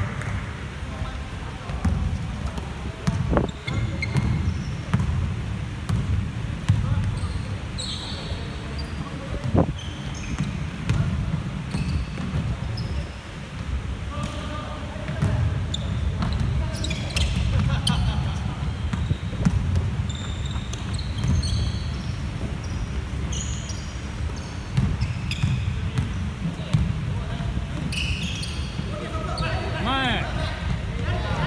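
A basketball being dribbled and bouncing on a wooden gym floor, with repeated thuds from the ball and players' feet throughout. Short high sneaker squeaks come often, and there are a couple of sharp knocks.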